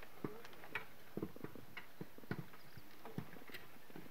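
Horse walking along a dirt track pulling a loaded cart: light clip-clop of hooves, irregular knocks a few times a second.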